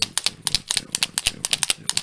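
Quick, irregular clicking and clacking, about six or seven sharp clicks a second, as a fancy pen is twirled and tapped against metal rings on the fingers.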